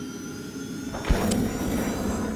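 Animated logo intro sound effects: a rushing whoosh with sustained tones, broken by a sharp deep hit about a second in.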